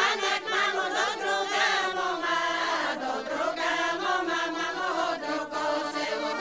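A Bulgarian folk singing group from Dobrudzha, mostly women's voices, singing a traditional song together.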